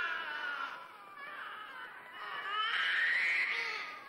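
A baby crying in long wails: one falling away early, a shorter cry about a second in, then a longer cry that rises and falls toward the end.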